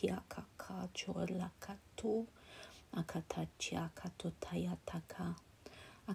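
A voice in soft, half-whispered delivery, uttering strings of made-up syllables: channelled 'light language', with a short pause about halfway through.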